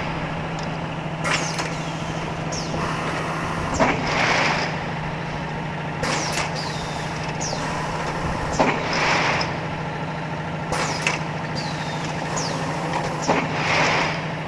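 Automatic balloon printing machine running with a steady motor hum. Its pneumatic actuators cycle with sharp clacks, and a hiss of exhausting air comes about every five seconds.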